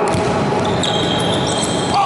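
Futsal being played on an indoor hall court, with the ball and players' feet thudding on the hard floor. A high, steady squeal starts a little under a second in and lasts about a second.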